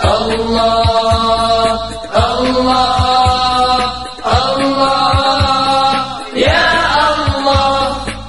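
Sholawat, Islamic devotional song: Arabic singing in long held phrases about two seconds each, over deep drum beats.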